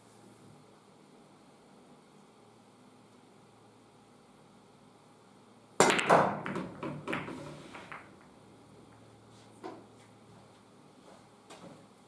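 A straight pool break shot about six seconds in: a sharp crack as the cue ball hits the racked balls, then about two seconds of balls clicking against each other, fading away, and one more lone click a few seconds later.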